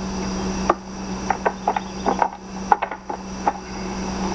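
Irregular light knocks and scuffs from a wooden ladder and from bodies shifting on it as a man takes a woman onto his shoulder to carry her down, about seven knocks in four seconds, over a steady low hum and hiss in the recording.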